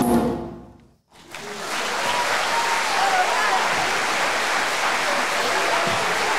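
The choir's song ends, dying away within the first second, and after a brief gap an audience in a large hall applauds steadily, with a few voices calling out in the crowd.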